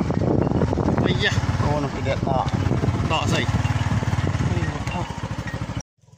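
Small motorcycle engine running steadily, with people's voices talking over it; the sound cuts off abruptly near the end.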